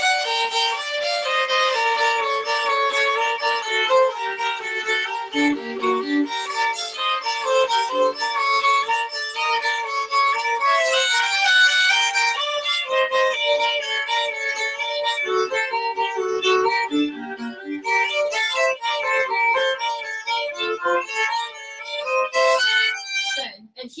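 Two violins playing a waltz duet in strict, even three-time, one carrying the melody over the other's harmony, with the parts swapping briefly. The playing stops just before the end.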